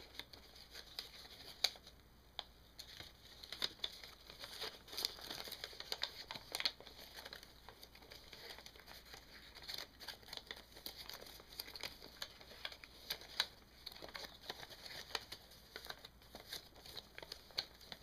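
Faint, irregular rustling and crinkling of a folded paper cootie catcher being handled, with a few sharper crackles scattered through.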